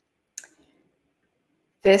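A single short click about half a second in, then a pause with no sound until a woman's voice starts near the end.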